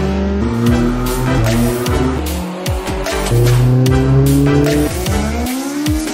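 A car engine revving hard, its pitch climbing and dropping back several times as it runs up through the revs, mixed with electronic music with a steady beat.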